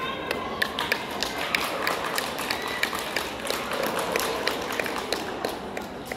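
An irregular run of sharp taps and clicks, several a second, over the steady murmur of a hall.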